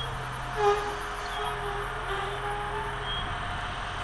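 Diesel railcars running at a station: a steady low hum with a held engine tone, and one brief louder sound about two-thirds of a second in.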